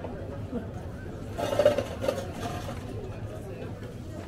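Indistinct voices of people talking at a coffee stall counter, over steady outdoor street background noise, with a brief louder burst of sound about a second and a half in.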